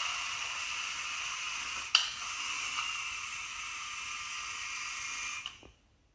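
LEGO Spike Prime robot's drive motors whirring steadily as it drives and steers, with a click about two seconds in. The whirr cuts off near the end as the robot stops.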